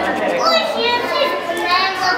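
Children's voices: high-pitched talking and calling out in a crowded hall.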